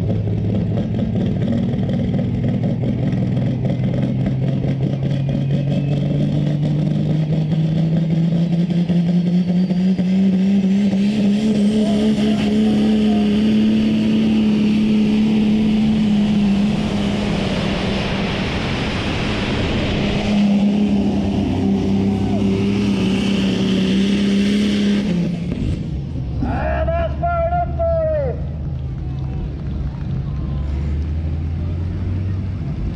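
Prostock pulling tractor's turbo diesel engine at full power during a pull: its pitch climbs over the first dozen seconds, holds high, then drops away abruptly about 25 seconds in as the run ends. A short falling whistle follows.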